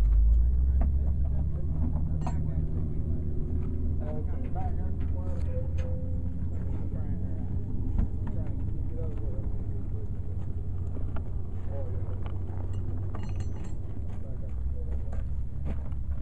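A steady low engine hum from nearby farm machinery, with a few sharp metallic clinks from steel pins and transport-kit parts being handled.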